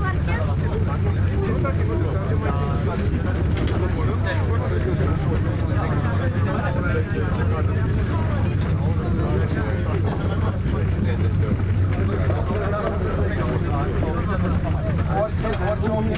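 Steady low hum inside a gondola cable-car cabin on its way up, with indistinct chatter of passengers' voices throughout.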